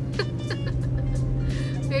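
Steady drone of a car moving along the road, heard inside the cabin, with music playing underneath. A short laugh comes at the very end.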